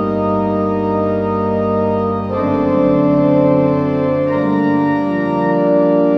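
Church pipe organ playing a voluntary in held chords, the chord changing about two seconds in.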